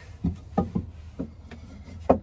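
A wooden table piece being seated onto its support bolts: several dull wooden knocks in the first second or so.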